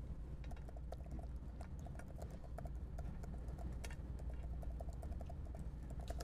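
Typing on a computer keyboard: a run of quick, light keystrokes entering a username and password, over a steady low room hum.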